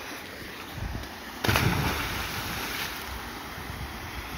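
A person jumping feet-first into a swimming hole: one loud, sudden splash about one and a half seconds in that dies away over a second, over the steady rush of a small waterfall.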